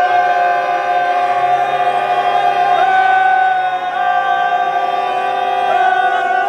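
A long, drawn-out chanted call held on one steady note, voices sustaining a single devotional slogan. It steps slightly in pitch a couple of times along the way.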